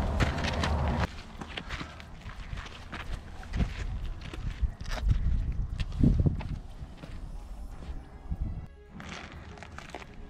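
Footsteps crunching on a rocky dirt trail, with irregular taps of a trekking pole, after a low steady rumble that lasts about the first second. Music plays in the background.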